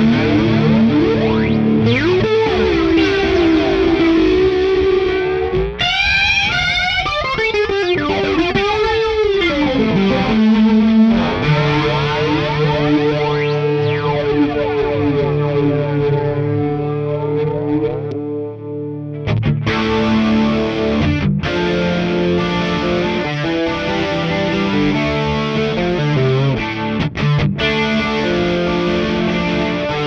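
Gibson Les Paul electric guitar played through a Meris Polymoon set to its classic LFO flanger: held chords with a slow, rising and falling flange sweep, most pronounced about six to ten seconds in. The playing dips briefly past the middle, then resumes with more picked chords.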